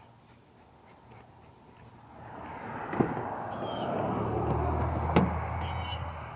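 A vehicle passing by on the street: engine and tyre noise swell from about two seconds in and fade near the end, with two sharp clicks along the way.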